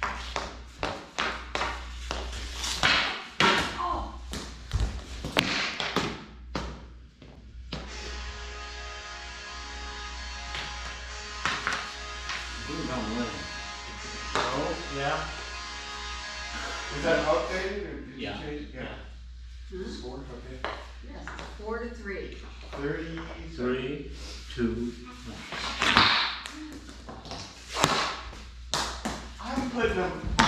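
Rapid sharp clacks of hockey sticks and a plastic ball on a concrete floor for the first several seconds, with another loud hit near the end. Music with a voice plays through the middle and later part.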